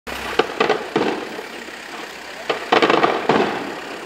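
Fireworks shells bursting overhead: about six sharp bangs in two clusters, each followed by a rumbling echo that dies away.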